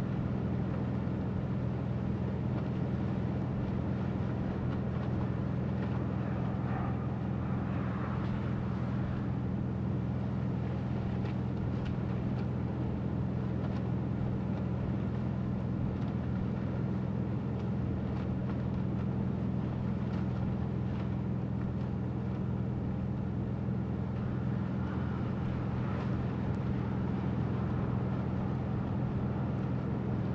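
A steady low mechanical hum at two constant pitches, with a faint wash of background noise over it. It does not change for the whole stretch.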